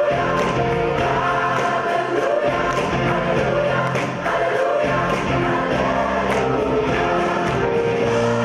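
A gospel choir, children among the singers, singing with band accompaniment over a steady beat.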